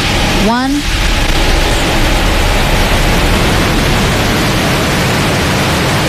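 SpaceX Falcon Heavy rocket at ignition and liftoff: a steady roar from its 27 Merlin engines sets in just under a second in and holds without letting up.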